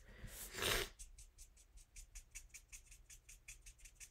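Marker tip flicked in quick short strokes across white cardstock: faint light scratches, about five a second. A short breath comes in the first second.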